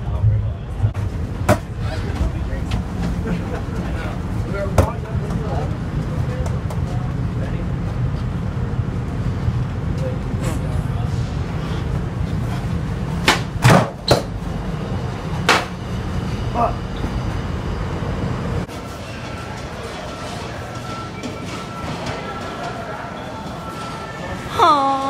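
Metro train's low, steady rumble inside the car, with a few sharp knocks and clicks as it stops and passengers file out. About 19 seconds in the rumble drops away, leaving the quieter sound of a large station hall with a faint steady hum.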